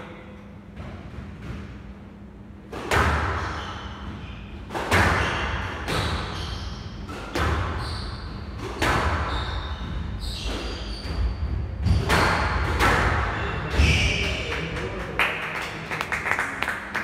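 A squash rally: the ball is struck by rackets and slams off the court walls, a sharp hit about every one to one and a half seconds with hall echo, starting about three seconds in, along with short high squeaks of shoes on the wooden floor.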